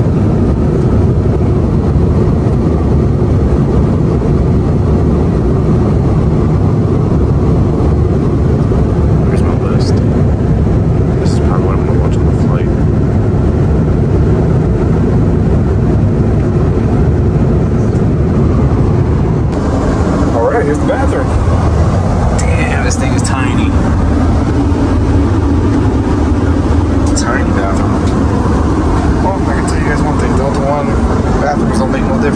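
Steady low rumble of cabin noise inside an Airbus A330neo airliner. About two-thirds of the way in the sound changes, and faint voices come through over the rumble.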